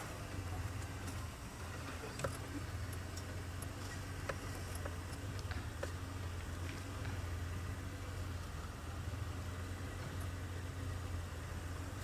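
Game-drive vehicle's engine running steadily at low revs: an even low hum with no revving, and a few faint ticks over it.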